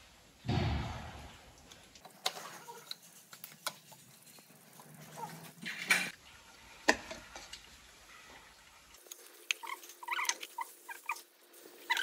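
Clinks, clicks and knocks of metal and plastic engine parts being handled on a stripped-down diesel truck engine, with a louder thud about half a second in. A run of short squeaks comes near the end.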